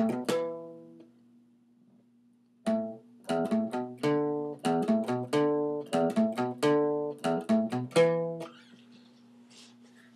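Acoustic guitar playing a single-note riff on the low E and A strings, the first three notes of each figure played as a triplet. One note rings out and dies away at the start, then after a pause of about two seconds a quick run of plucked notes follows for about six seconds.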